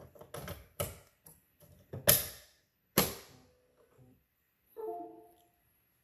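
Plastic clicks and knocks as a Lexmark No. 1 ink cartridge is pressed into the carriage of a Dymo DiscPainter disc printer and the printer's lid is shut, the two loudest knocks about two and three seconds in. A short hum follows near the end.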